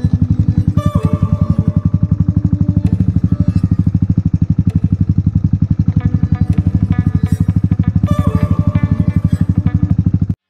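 Motorcycle engine running at low revs under way, with a steady, even exhaust beat of about twelve pulses a second.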